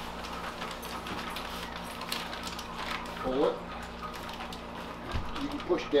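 Steady low hum and room noise with light handling sounds, a brief murmur of a voice about three seconds in, and talk starting near the end.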